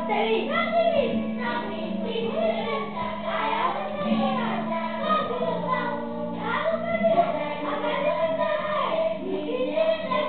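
Children's voices singing a song over musical accompaniment with sustained low notes.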